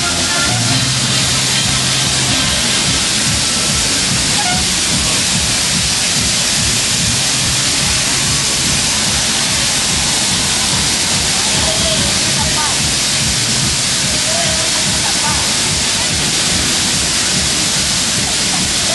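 Fairground din around a spinning ride: a loud, steady hiss-like wash of noise, with music and voices faint underneath.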